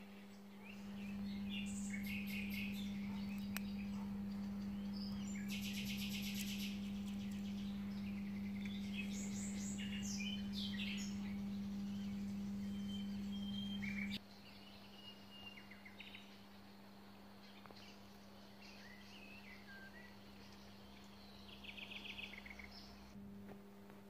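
Small birds chirping and trilling, with many short high calls scattered throughout. Beneath them runs a steady low hum that cuts off suddenly about halfway through.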